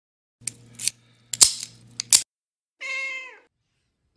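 A quick run of sharp clicks and knocks over a low hum, then about a second later a single short cat meow that dips in pitch at its end.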